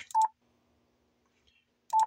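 Two short single-tone beeps from a Yaesu FT-710 transceiver as its on-screen menu buttons are pressed: one just after the start and one near the end, each with a light click.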